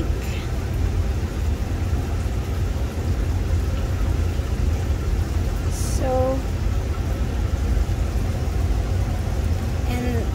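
A cooler running close by: a steady low rumble, with a short voice sound about six seconds in.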